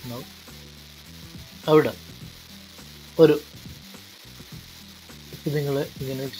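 Steady hiss of a noisy recording microphone, with two brief vocal sounds from the narrator about two and three seconds in, and speech starting again near the end.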